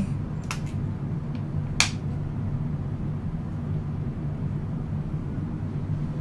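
Steady low room hum, with a few light clicks from handling makeup items such as an eye pencil and a compact, the sharpest about two seconds in.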